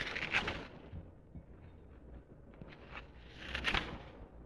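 Steel wool being pulled apart by gloved hands: a scratchy, crackly rustle in two short bursts, one at the start and one shortly before the end.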